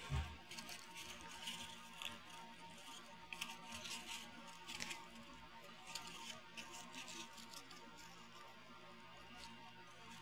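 Faint, irregular rustling and scratching of hands bending fuzzy pipe cleaners around a cardboard egg carton.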